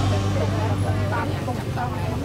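Crowd chatter: many people talking at once, overlapping voices with no single clear speaker.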